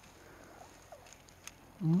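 A quiet stretch with a few faint ticks, then near the end a man's short voiced "mm" hum.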